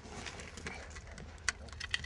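Quiet handling noise with two short sharp clicks about one and a half and two seconds in, as a wooden wedge and a steel pry bar are worked at the base of a steel shipping container.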